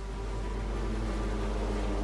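A steady, low rumbling drone with several sustained tones held throughout.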